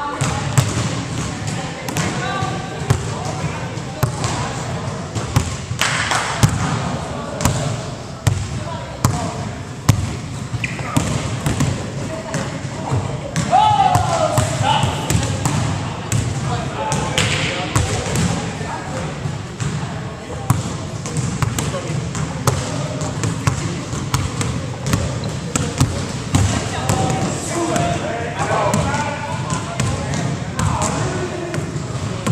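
Basketballs bouncing irregularly on a hardwood gym floor during a drill, with scattered voices of players in the background.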